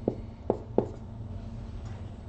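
Writing on a whiteboard with a marker: three short taps of the marker against the board in the first second, over a low steady hum.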